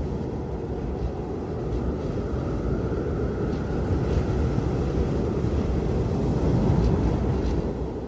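Steady rush of a fast-flowing mountain river over rocks, growing slightly louder toward the end.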